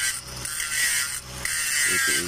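Angle grinder running with its disc on the weld bead of a steel pipe: a steady high whine and grinding hiss, its level dipping briefly twice.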